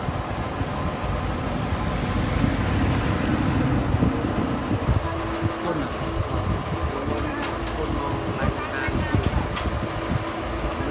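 Mitsubishi asphalt paver's diesel engine running steadily under load as the machine climbs the ramps onto a flatbed trailer. Several sharp metal knocks come in the second half.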